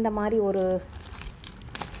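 Crinkling of plastic-and-tape-wrapped packets being handled in a suitcase, scattered and irregular, coming mostly in the second half after a short spoken phrase.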